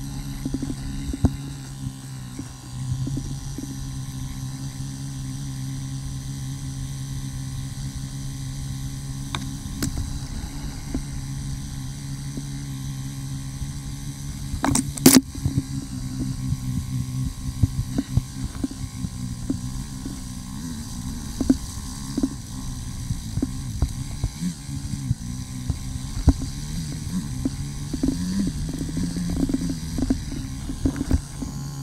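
KTM Freeride 350 single-cylinder four-stroke dirt bike engine running at a fairly steady speed on a trail ride, with scattered knocks and rattles from the bike over rough ground and one loud knock about halfway through.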